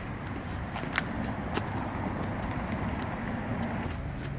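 Outdoor town ambience: a low, steady rumble of traffic, with a couple of light clicks about one and one and a half seconds in.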